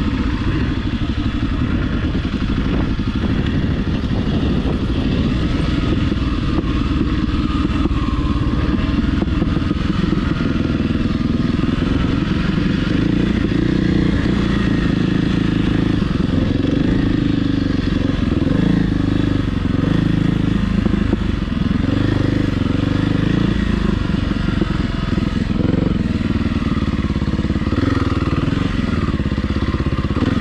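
Kawasaki KLX300R dirt bike's single-cylinder four-stroke engine running under way on a dirt trail, its revs shifting up and down with the throttle.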